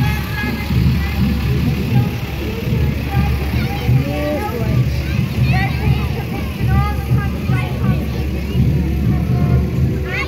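A lorry's engine running low and steady as it passes in a parade, under the mixed chatter and calls of a crowd with children's voices.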